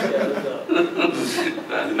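A man chuckling softly, with a short breathy rush of air a little past one second in.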